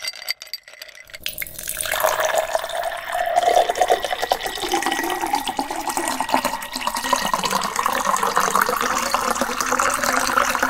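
Thick smoothie poured in a steady stream into a tall glass, splashing as the glass fills. A few light clinks come first, in the opening second, before the pour.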